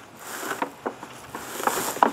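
A hard plastic cooler being turned around on grass: a steady rustling scrape with a few light knocks and clicks.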